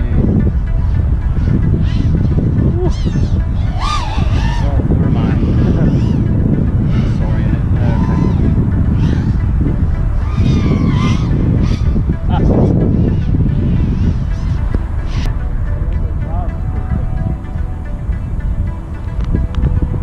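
Wind buffeting the microphone, with the rising and falling whine of a 5-inch FPV racing quadcopter's motors on tri-blade props as it flies the course.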